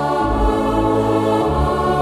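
An electronic arranger keyboard plays a slow hymn in sustained chords, with the bass note changing about a quarter second in and again about a second and a half in.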